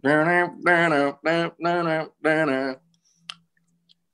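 A man vocally imitating music kicking in: five short held syllables on one low, steady pitch, then a single sharp click a little after three seconds in.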